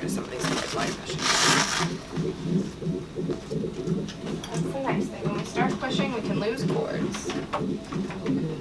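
Electronic fetal heart monitor playing the baby's heartbeat as a steady pulsing, about two to three beats a second. There is a short burst of cloth rustling about a second in.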